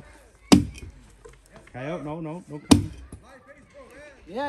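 Two axe chops into a weathered fallen log, about two seconds apart.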